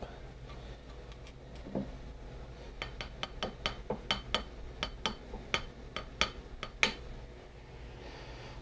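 Light metallic taps on a loosened ignition breaker plate: one tap about two seconds in, then a quick run of about four taps a second for some four seconds. The taps nudge the plate round a little at a time to bring the contact points to the point of opening at the F timing mark.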